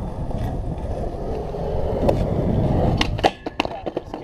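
Skateboard wheels rolling on concrete, a steady rumble, then several sharp clacks of the board about three seconds in as the board comes out from under the skater's feet and hits the ground.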